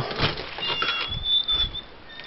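Shuffling and handling knocks as someone moves through a doorway, with a thin, high squeak or whistle held for about a second in the middle.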